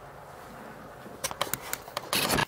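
Low room hiss, then from about a second in a quick run of clicks and rustles from the camera being handled and moved.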